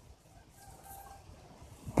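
A quiet outdoor pause with low background hum and a faint, short call from a distant bird about a second in.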